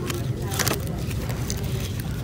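Steady low rumble of a busy store's background noise, with a couple of faint clicks from packaged hairbrushes being handled on a pegboard hook.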